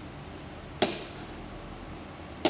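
A single sharp impact with a short decaying tail, a little under a second in, over a steady low background.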